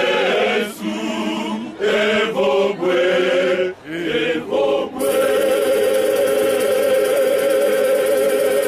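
Male choir singing a gospel hymn in short phrases, then holding one long chord from about halfway through.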